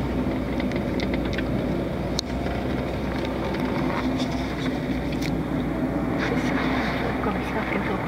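Steady road and engine noise of a moving car heard from inside the cabin, with a couple of light clicks.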